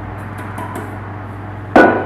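Light taps as flour is tipped from a small stainless steel bowl into a mixing bowl, then one loud metallic clank near the end as the small steel bowl is set down hard on the wooden table.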